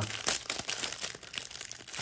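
Clear plastic wrapper of a trading-card pack crinkling with irregular crackles as hands pull it open.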